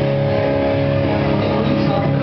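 An amplified electric guitar holding a steady chord that rings on.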